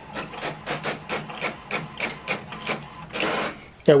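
HP OfficeJet Pro 8135e inkjet printer printing a test page: quick repeated strokes, about four a second, over a steady low motor hum, then a longer, louder stretch about three seconds in.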